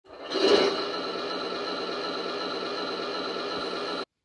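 Intro sound effect: a steady drone made of many held tones. It swells in over the first half second, holds level, and cuts off abruptly at the end.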